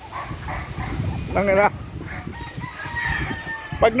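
A rooster crowing: one long drawn-out call through the second half.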